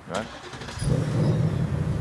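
A 2024 Ford Mustang GT's 5.0-litre V8 starting up about three-quarters of a second in, jumping sharply in level as it catches, then running at a steady, low-pitched idle.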